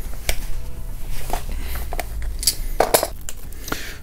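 Steel wrenches clinking and clicking against a brass radiator valve's union nut as the nut is worked loose, a few separate sharp metallic clicks.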